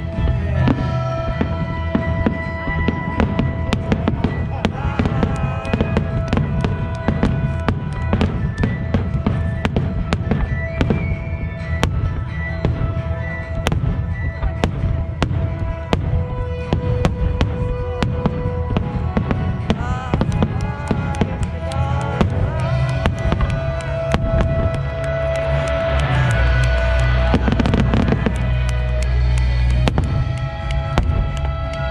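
Aerial firework shells bursting in quick succession, a dense stream of bangs and crackles, with music playing along throughout. The bursts grow louder and denser in the last few seconds.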